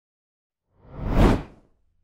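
A single whoosh sound effect for a video transition. It swells up about a second in and fades away within half a second.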